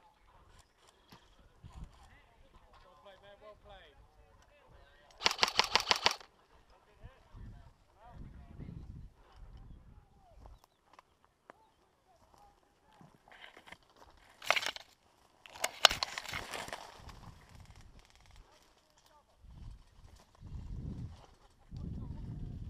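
Airsoft electric gun firing on full auto: a short, loud burst of about ten shots a second about five seconds in, then a brief burst and a longer rattling run of shots around the middle of the second half.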